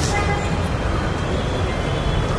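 Steady low rumbling background noise of an open-air setting, with no distinct events.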